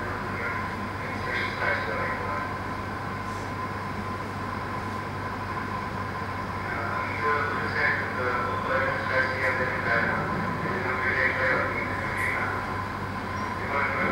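Steady room hum and hiss, with a constant mid-pitched tone, typical of a PA system or projector in a lecture hall. Low voices murmur over it now and then, more in the second half.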